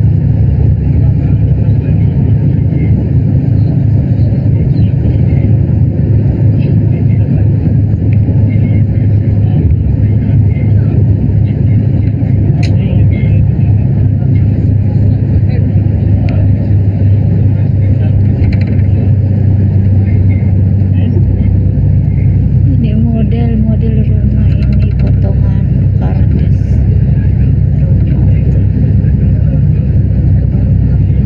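Steady low rumble of a moving road vehicle heard from inside the cabin, growing heavier in the lowest register about two-thirds of the way through. Faint voices are heard briefly late on.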